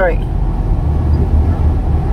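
Steady low drone of a car's engine and tyres on the highway, heard from inside the moving car's cabin.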